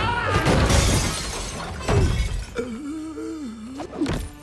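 Glass shattering and crashing as a stained-glass window is smashed in, with a loud break near the end.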